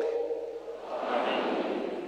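The last chanted note of a bishop's sung prayer dies away in a large church's reverberation. A soft, diffuse swell of sound follows about a second in and fades again.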